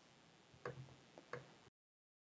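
Faint clicks of computer input, two of them about two-thirds of a second apart with a softer tick between, over near silence; the sound cuts out to dead silence just before the end.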